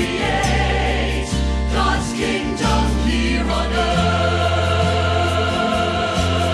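Choir singing a Christian hymn-style song over instrumental accompaniment. The bass moves through a chord change every second or less, then settles on a long held chord about four seconds in.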